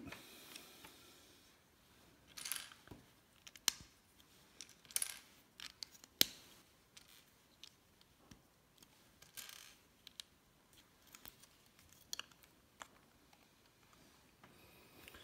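Plastic LEGO bricks being handled and pressed together: scattered sharp clicks and short clattering rattles as pieces are picked from a loose pile and snapped onto the build. The sharpest click comes about six seconds in.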